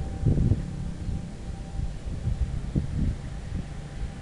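Wind buffeting the microphone in uneven low gusts, strongest just after the start and again around three seconds in, with a faint steady hum underneath.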